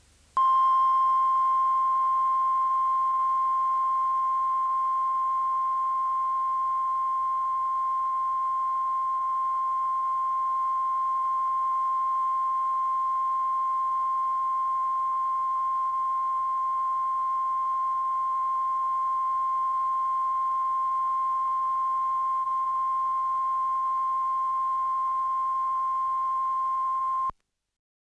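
Television test-card line-up tone at station closedown: one steady, pure, high tone, signalling that the channel is off air. It starts just after the start and cuts off suddenly near the end.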